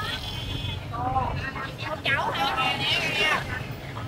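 Street-market ambience: several voices talking at a distance over a steady low motorbike engine rumble.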